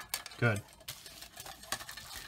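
Scattered small clicks and light rattling of hookup wires, plastic crimp connectors and aluminium LED boards being handled and shifted on a table, just after a wire was pushed into a board connector and tugged to check it.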